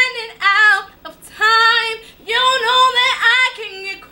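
A young woman singing an R&B song solo, in sustained phrases with held, wavering notes and short pauses for breath between them.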